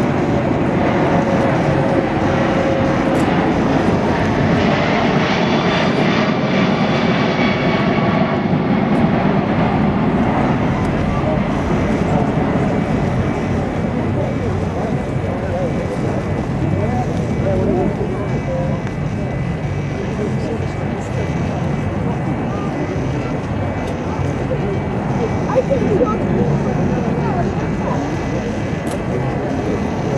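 Airbus A340-600's four Rolls-Royce Trent 500 turbofans passing overhead in a flypast: a loud, steady jet roar with a high engine whine that fades after about eight seconds. The roar then eases slowly as the aircraft banks away.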